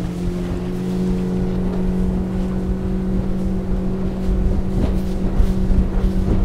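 Yamaha F90 four-stroke outboard running at a steady planing speed, one even engine drone with the rush of wind and water under it.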